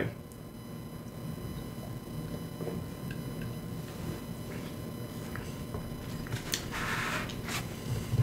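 Quiet mouth sounds of a person sipping hard seltzer from a glass and swallowing, with a few small clicks and a short breathy sound about seven seconds in.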